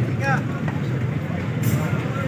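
Outdoor crowd ambience: a steady low hum with faint background voices, and a brief hiss near the end.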